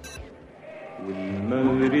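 A man's voice begins a slow, drawn-out recitation of colloquial Arabic poetry about a second in, after a brief lull, its notes held long in a chant-like way.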